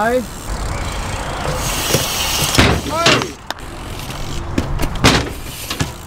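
Dirt jump bike tyres rolling on a concrete skatepark, then a sharp landing impact about two and a half seconds in, followed by a short shout. Another knock comes near the end.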